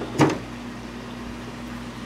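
Steady low hum with a faint hiss from a reef aquarium's sump equipment. One sharp knock comes just after the start.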